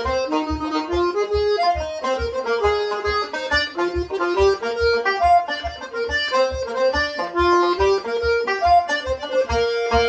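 Button accordion and banjo playing an Irish slide together, a brisk, lilting dance tune with a steady low beat underneath.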